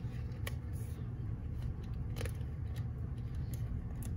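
Steady low background hum with a couple of faint clicks.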